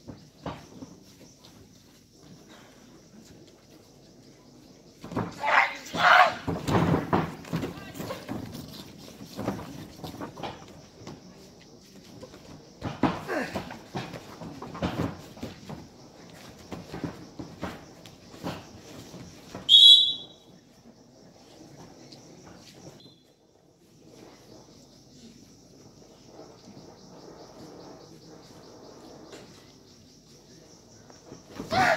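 Spectators shouting and calling out in irregular bursts during a traditional wrestling bout, loudest near the start of the shouting, with a short shrill blast about twenty seconds in. After the blast it goes quieter, leaving a faint steady high hiss.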